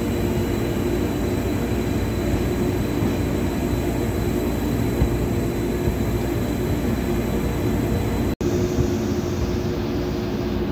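Steady running noise of a train in motion, heard from inside a carriage at an open window, with a momentary break in the sound about eight seconds in.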